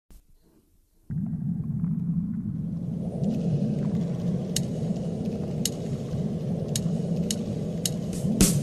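A steady low rumble starts suddenly about a second in. Sharp clicks come roughly once a second from about halfway through.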